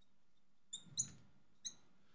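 A marker squeaking on a glass writing board as a word is written: three short, high squeaks in the second half, over faint room tone.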